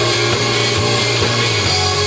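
Live rock band playing: two electric guitars, electric bass and a drum kit, loud and steady.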